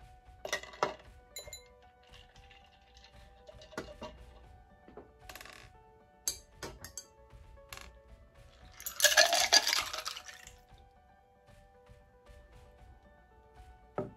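A metal bar spoon clinks against glass several times, then about nine seconds in a berry margarita is poured over ice into a plastic cup, splashing and clattering for about a second and a half. Faint background music plays underneath.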